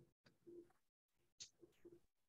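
Near silence, broken by three faint, short low hoots, such as a bird's coos, about half a second in and twice near the end.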